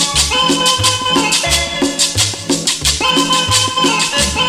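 Cumbia dance music with a steady beat: a bass line repeating about twice a second, rattling shaker percussion and sustained melody notes.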